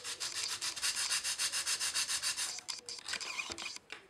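A small plastic model box assembly is rubbed back and forth on fine sandpaper glued to a wooden block, truing its sloped top flat. The quick, even scraping strokes come about seven a second and stop a little over halfway through, followed by a few light clicks.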